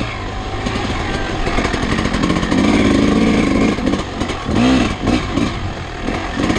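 Dirt bike engine revving up and down while ridden over a rough trail, heard close from a camera mounted on the bike.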